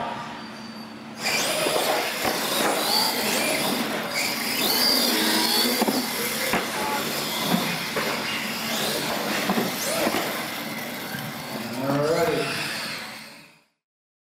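Radio-controlled monster trucks racing, their motors whining, mixed with onlookers' voices. It starts about a second in and fades out shortly before the end.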